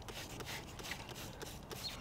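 Faint, short hisses from a spray bottle of bike degreaser sprayed onto a rear cassette, several spritzes one after another.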